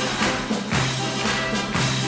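Instrumental intro on acoustic guitar, accordion and double bass: a steady beat of about two strokes a second over held low notes.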